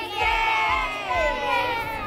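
A group of children shouting and cheering together, many voices at once.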